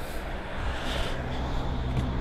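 Low, steady background noise of street traffic and outdoor hum.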